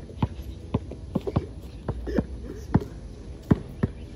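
Basketball dribbled on an asphalt driveway: about nine sharp bounces at an uneven pace, as a player dribbles against a defender.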